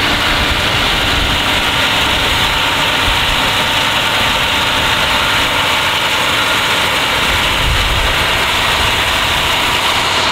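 Fire engine's diesel engine running steadily at a constant, loud pitch.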